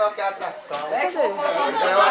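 Several voices talking and exclaiming over one another: lively chatter.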